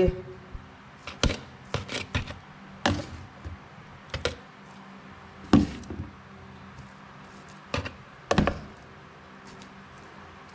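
Stainless steel tongs clicking and knocking against a plastic bowl and tub in a metal sink as bait lumps are picked up and packed in: scattered sharp taps, with louder knocks about five and a half and eight and a half seconds in.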